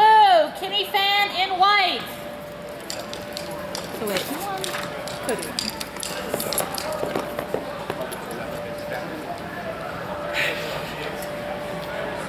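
A man's loud announcing voice for about the first two seconds. Then the general murmur of distant voices and scattered small knocks and clatter in a large hall, with a faint steady tone underneath.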